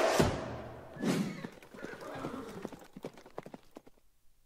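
The logo jingle's final hit rings out, then a horse sound effect follows: a brief whinny and a run of galloping hoofbeats that thin out and fade away.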